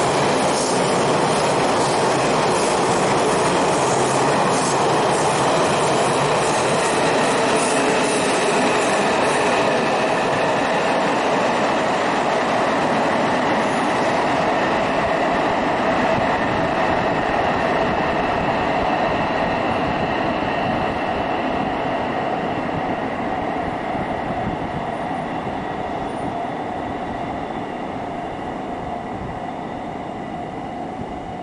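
TRA push-pull Tze-Chiang express (E1000 series) running through an underground station without stopping: a loud, steady rumble of wheels on rail for about the first half, fading away gradually as the train runs off into the tunnel. Thin, steady high tones ring over the rumble.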